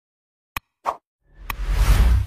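Animated like-and-subscribe button sound effects: a mouse click about half a second in and a short pop just before a second, then a swelling whoosh with another click in it.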